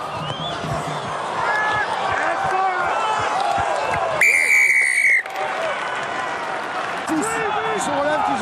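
A rugby referee's whistle blown once, a single steady blast lasting about a second, about four seconds in. Under it, steady stadium crowd noise with scattered shouts.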